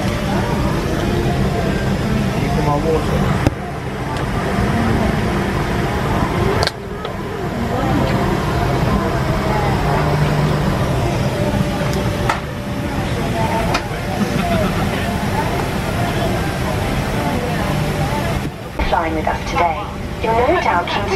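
Boeing 747 cabin noise at the gate: a steady low ventilation hum with indistinct passenger chatter, shifting abruptly a few times.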